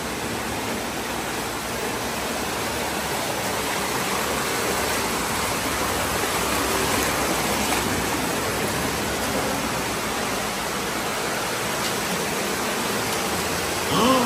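Underground cave waterfall and stream: a loud, steady rush of falling water splashing over rocks close by.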